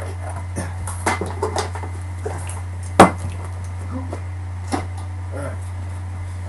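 Knocks and clatter of bench equipment being handled and moved, with one sharp, loud knock about three seconds in, over a steady low hum.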